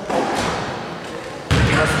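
A basketball from a free throw strikes the hoop and bounces on the hardwood floor, echoing in a large gym hall. Commentator speech starts again near the end.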